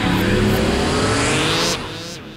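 Electronic logo sting: a whoosh and tones rising in pitch over a steady low bed, breaking off abruptly near the end and fading away.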